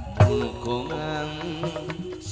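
Live Sundanese calung music: a man singing a long, wavering note over a bamboo calung ensemble, with a single sharp kendang drum stroke just after the start.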